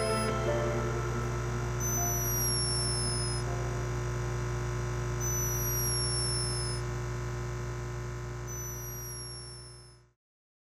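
A resting hummingbird's tiny snore: a thin, high-pitched falling squeak about every three seconds, three times. Soft background music with a steady low drone plays underneath and fades out at the end.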